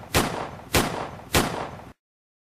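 Gunshot sound effect: three shots a little over half a second apart, each trailing off in an echo. The sound cuts off suddenly just before the end.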